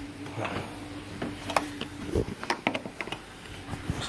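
Scattered light clicks and taps from hands and a screwdriver working on a car's plastic front bumper around the fog lamp housing, over a faint steady hum.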